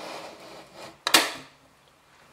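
Metal clamp latch on a clear plastic canister lid being pressed shut: soft handling rustle, then one sharp click about a second in.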